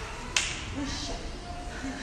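A single sharp click about a third of a second in, over faint voices and room noise.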